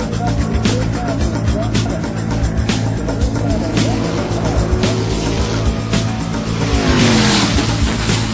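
Background music with a steady beat, mixed with racing-car engine sound. About seven seconds in, a car passes and its engine note falls in pitch.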